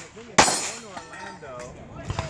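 A single pistol shot about half a second in, loud and sharp, ringing out briefly afterward.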